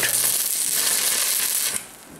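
Stick (arc) welder tack-welding steel: the arc gives a steady hiss that cuts off near the end.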